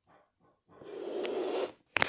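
A person blowing out a breathy whoosh for about a second, starting partway in, followed by a brief click near the end.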